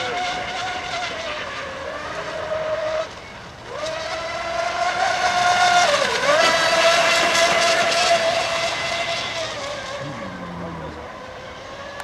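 Electric RC racing boat, a custom-painted Miss Geico catamaran, running at high speed with a high-pitched motor whine. The whine drops away for under a second about three seconds in, comes back louder with a quick dip in pitch around the middle, and fades near the end.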